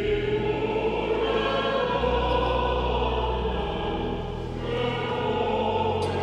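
A church congregation singing a hymn together.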